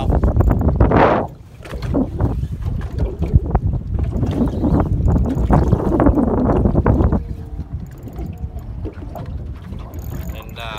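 Wind buffeting the microphone on a small boat on open water, with water noise and uneven knocks. It is loudest about a second in and eases off after about seven seconds.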